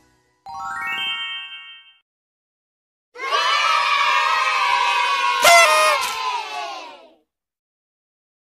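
A short rising whistle-like sound effect, then a recorded group of children cheering for about four seconds, with a couple of sharp clicks partway through.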